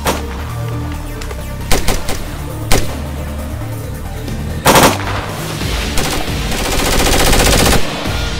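Staged gunfire from rifles: a few single shots in the first seconds, a short burst near the middle, then a long rapid burst of automatic fire just before the end.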